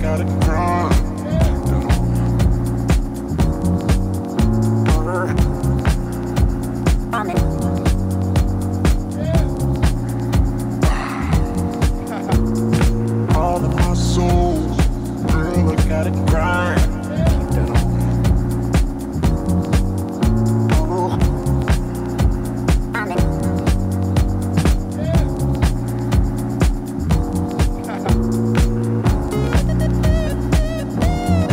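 Deep, jazzy house music played from vinyl records: a steady, even beat under a bass line and sustained chords.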